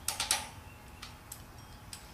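Light metal clicks and taps from a distributor being worked down into a VW Type 1 engine case: a quick cluster of about four at the start, then a few scattered single ones.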